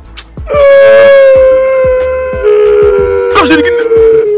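Long held wailing cry in a high, steady pitch that sags slightly. A second, lower wail joins about halfway through, and the two hold together to the end.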